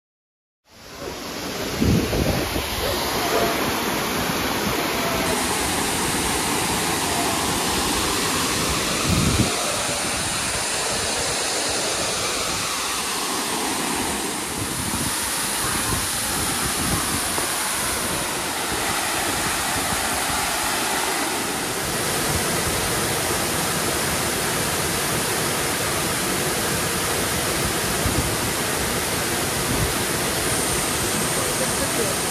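Steady rush of a tall waterfall pouring into its plunge pool. It fades in about half a second in, with a couple of low thumps near the start and about nine seconds in.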